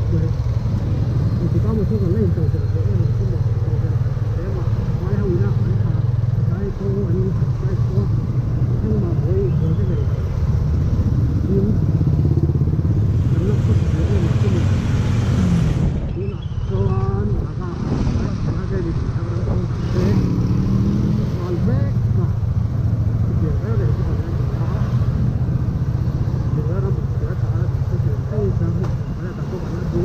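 Motorcycle engine running at low speed in slow stop-and-go traffic, heard from the rider's own bike, with muffled voices over it.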